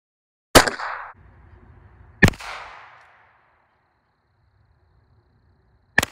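Two shots from a lever-action Henry .22 Long Rifle rifle, about a second and a half apart, each sharp crack followed by a short echo. Another sharp crack comes right at the end.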